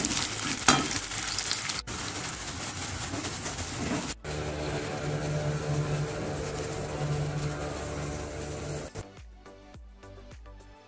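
Food frying in hot oil, sizzling as a spatula stirs it, in a few short clips joined by abrupt cuts. Music comes in near the end.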